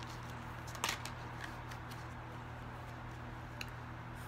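Tarot cards being handled: a few light clicks and taps, the clearest about a second in, over a steady low hum.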